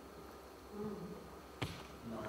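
A quiet pause in a room with a faint steady hum, a brief low murmur just before a second in, and one sharp click near the end.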